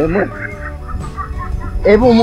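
Chickens clucking in short, scattered calls, with a voice coming back in just before the end.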